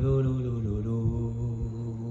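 A man chanting a football terrace chant, holding one long low note.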